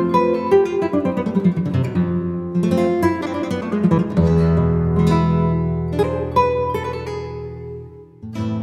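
Background music on acoustic guitar: plucked notes and quick runs over a low note that is held from about four seconds in, fading near the end.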